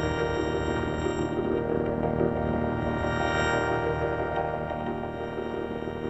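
Logo jingle music: one sustained chord held throughout and slowly fading, with no beat.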